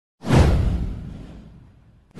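Intro sound effect: a whoosh with a deep boom that hits suddenly about a quarter second in. It sweeps downward in pitch and dies away over about a second and a half.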